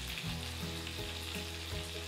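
Beef burger patties topped with melted cheddar frying in a nonstick skillet, a steady sizzle.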